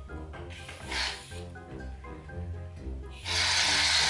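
Aerosol shaving-cream can spraying foam: a loud, even hiss starting about three seconds in, after a brief softer hiss about a second in.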